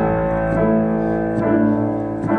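Stage keyboard playing sustained chords, restruck in a slow, regular pulse: the steady rhythmic start of a straight build in a worship song, before it grows in intensity.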